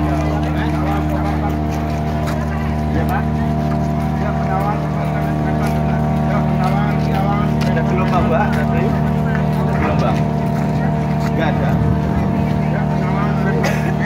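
The engine of a large docked passenger ship running steadily, a continuous low drone with steady pitched tones, under the chatter of a crowd of people.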